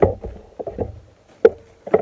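A small fluffy dog bumping and brushing against the recording camera, giving several sharp knocks with rubbing in between. The loudest knocks come at the start and about a second and a half in.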